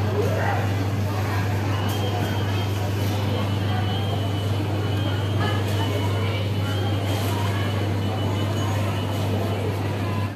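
Supermarket ambience: a steady low hum under a noisy background, with indistinct voices of other shoppers.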